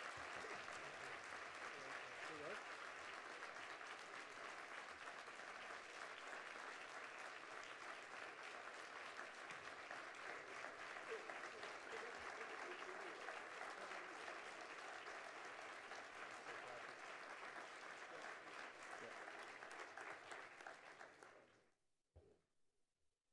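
Conference audience applauding steadily, dying away near the end.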